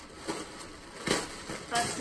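Tissue paper rustling and crinkling as hands unwrap it inside a cardboard box, with two louder crinkles about one and nearly two seconds in.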